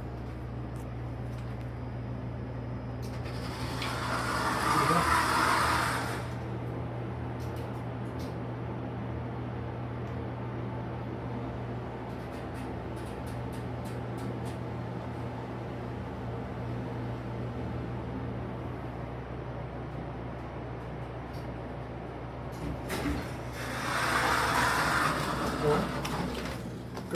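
A hydraulic passenger elevator (US Elevator SoftTouch, 1997) on a trip between floors: the doors slide closed with a rush of noise a few seconds in, a steady low hum carries the ride, and the doors slide open again near the end.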